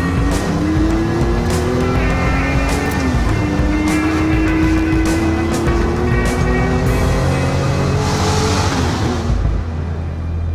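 Car engine accelerating hard, its pitch climbing steadily, dipping once about three seconds in and then climbing again, over background music. A burst of hiss comes about eight seconds in, just before the engine note fades.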